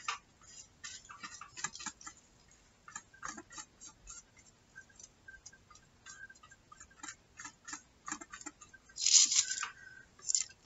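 Glue being brushed over thin crinkled paper with a flat paintbrush, the paper giving irregular soft crackles and ticks. A louder rustle of paper being handled comes near the end.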